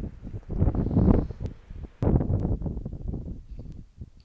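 Wind buffeting a phone's microphone in gusts, loudest about a second in and again about two seconds in, then easing off.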